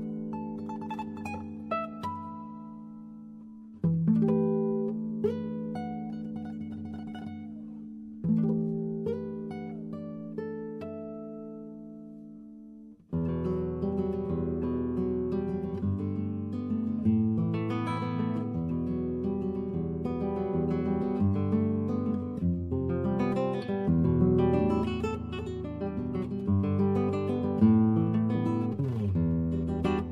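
Acoustic guitar background music. Slow chords ring out and fade, one at the start, one about four seconds in and one about eight seconds in. About thirteen seconds in, busier and fuller playing begins and carries on.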